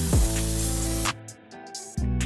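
Harbor Freight HVLP gravity-feed spray gun hissing as it sprays paint, cutting off suddenly about a second in. Background music plays underneath and carries on alone.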